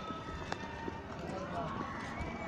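Street ambience with indistinct voices of people chatting nearby and a faint click about half a second in.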